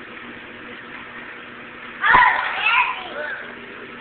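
A steady machine hum from a children's play machine. About two seconds in, a child lets out a sudden loud, high yell that lasts over a second and trails off.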